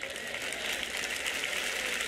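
Audience applauding, growing a little louder as it goes.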